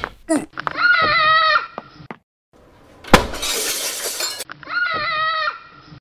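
A high-pitched wavering vocal cry, heard twice, with a sudden loud crash in between, about three seconds in, like something shattering, its hiss dying away over about a second.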